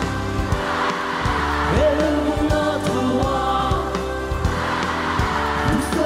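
Live Christian praise band playing an upbeat pop-rock song, with a steady drum beat under bass and held melodic notes.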